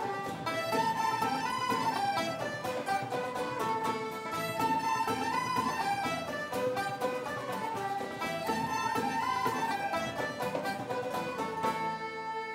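Irish traditional ensemble playing an instrumental passage: flutes and fiddles carry the melody over strummed acoustic guitars keeping a steady beat.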